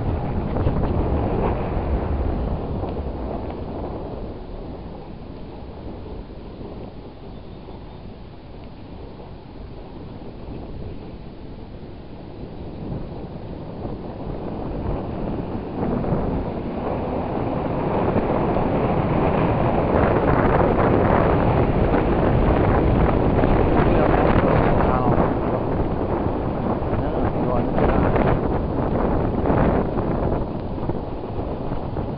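Wind buffeting the microphone of a camera riding on a moving bicycle, with the rumble of the ride underneath. It eases off after a couple of seconds and builds again from about halfway, loudest in the second half.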